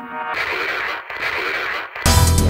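Electronic dance music at a break: the drums and bass drop out, and a hissy, radio-like filtered sound plays in two short phrases before the beat crashes back in.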